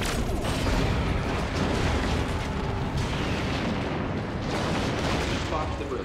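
Sci-fi film sound effects of photon torpedoes striking a starship and its destruction: a sudden loud blast right at the start, then continuing booming explosions with a heavy low end.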